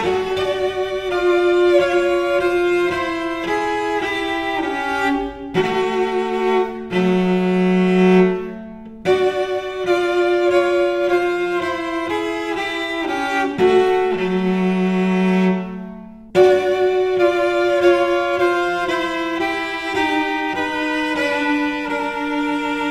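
Solo cello, bowed, playing a slow line of long held notes. Twice a low note is sustained and fades away, about seven and fourteen seconds in, each followed by a brief break before the line resumes.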